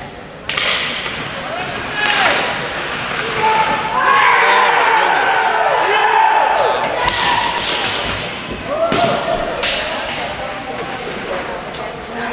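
Ice hockey play in a rink: sharp clacks of sticks and puck, then shouting and cheering for a goal, loudest from about four seconds in, with more stick clacks through it.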